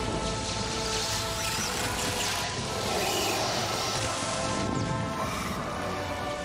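Movie soundtrack of a lightsaber duel: sustained orchestral score over the hum, swings and clashes of lightsabers.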